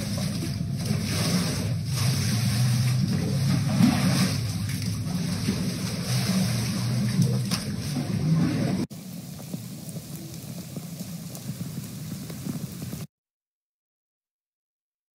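Indoor floodwater flowing and sloshing across a floor, a loud steady rushing noise. About nine seconds in it gives way abruptly to a quieter wash of noise, which cuts out suddenly about a second before the end.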